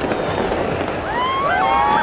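A fireworks display crackling and popping in dense bursts. From about a second in, several long, high, steady tones join in, each rising quickly, holding and then dropping away.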